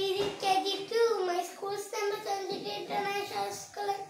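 A young boy's voice reciting in a sing-song way, syllables held on a fairly level pitch and running on without a break; the words are not clear.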